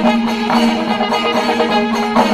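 Kerala temple percussion ensemble playing: many drums beaten in a dense, continuous rhythm while curved brass kombu horns hold a long, steady note over them.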